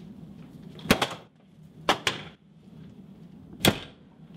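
Three sharp knocks or thuds, about a second in, about two seconds in and near the end, each with a short ringing tail, over a low steady room hum.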